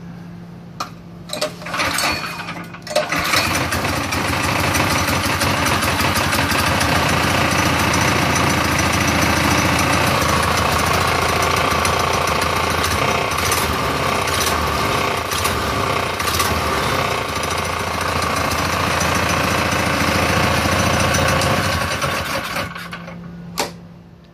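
Small gas engine of an electric-to-gas converted Club Car DS golf cart, starting about three seconds in after a few short knocks, running steadily for about twenty seconds, then shut off suddenly near the end.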